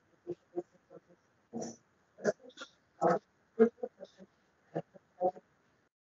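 A voice chopped into short fragments about a dozen times in a few seconds, with dead silence between them, too garbled for words to come through.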